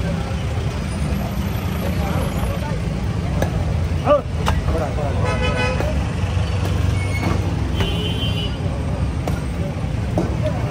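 Steady low rumble of road traffic, with a vehicle horn sounding for under a second about halfway through, a short high toot near the end, and a few sharp knocks.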